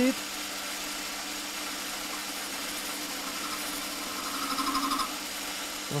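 Holzmann ED 750 FDQ benchtop metal lathe running steadily while a carbide turning insert cuts a chamfer on the edge of a stainless-steel tube. A louder, fluttering cutting sound builds from about three seconds in and stops just after five.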